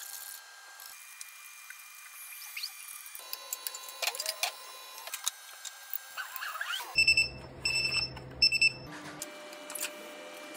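An electric oven's electronic beeper sounding three short, high beeps over a low hum, after a stretch of light workshop clicks and clatter.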